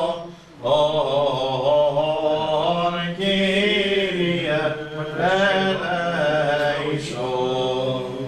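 Byzantine liturgical chant sung by men's voices: a slow, ornamented melody line over a steadier low held note. There are short breaths about half a second in and just after three seconds.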